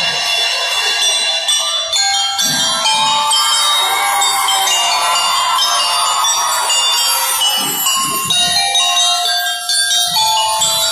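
Drum and lyre band music: bell lyres ring a melody in many bright, sustained tones, with a few low drum beats a couple of seconds in and again near the end.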